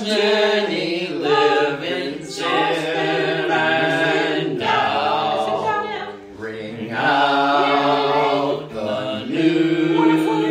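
A mixed group of men's and women's voices singing a hymn in parts, unaccompanied, on long held notes.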